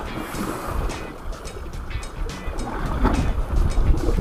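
Wind rushing over the microphone, with the sea washing on the rocks and background music underneath.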